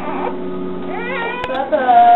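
A baby's cries: short, rising-and-falling wails in the second half, after a quieter first second.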